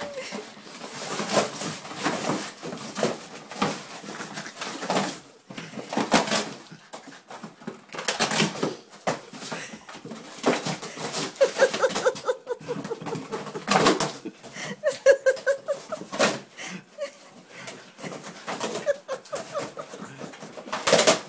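An English Springer Spaniel tearing and chewing apart a cardboard box, with irregular bursts of ripping and crunching cardboard.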